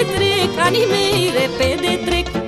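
Romanian folk music (muzică populară) playing: a heavily ornamented lead melody that bends and trills in pitch, over a bass pulsing in short regular notes.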